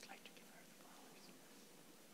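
Near silence with faint whispering, mostly in the first half second.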